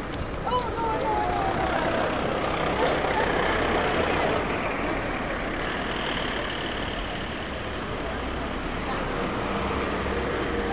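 A motor vehicle running nearby, its noise building over the first few seconds and easing off slightly after the middle. A brief voice is heard near the start.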